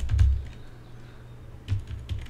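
Computer keyboard being typed on: a few keystrokes near the start and a couple more near the end, entering a username into a web login form.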